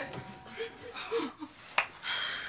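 A few sharp clicks and light knocks, a pair near the start and a pair about three-quarters through, with brief excited little hums from a woman in between.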